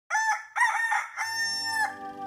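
A rooster crowing once: a cock-a-doodle-doo in three parts, the last drawn out into a long held note.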